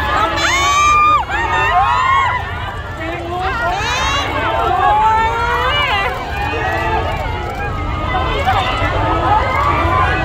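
Crowd of many voices talking and calling out over one another, with high excited squeals about half a second in and again around four seconds.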